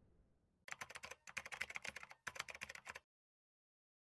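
Keyboard-typing sound effect: three quick runs of rapid key clicks, as if text were being typed out. It stops about three seconds in.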